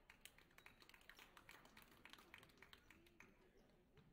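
Faint, quick, irregular taps and clicks that stop a little over three seconds in.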